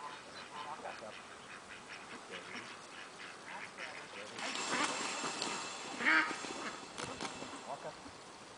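Domestic ducks quacking repeatedly while a herding dog moves the flock. A louder, noisier stretch comes about halfway through.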